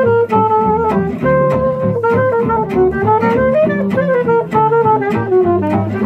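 Gypsy jazz quartet of two acoustic guitars, double bass and saxophone playing a swing tune: a held, gliding lead melody over steady strummed rhythm guitar and plucked double bass.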